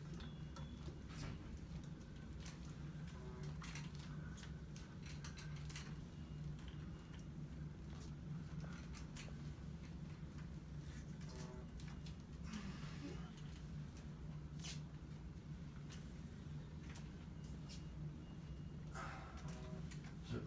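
A steady low room hum with scattered light clicks and knocks at irregular times, from an aluminium walker and a wheeled IV pole being moved along in short steps.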